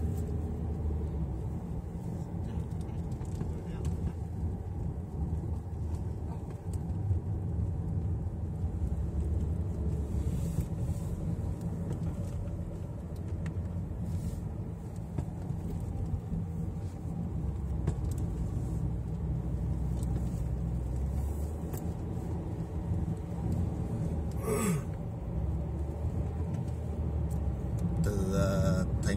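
Steady low road and engine rumble heard from inside a moving car's cabin, with a brief sharper noise near the end.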